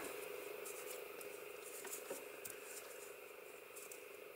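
Quiet room tone, a steady faint hum, with a few faint soft ticks from a metal crochet hook and acrylic-blend yarn being worked into a stitch.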